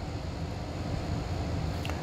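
Steady low hum and hiss of running machinery, unchanging throughout.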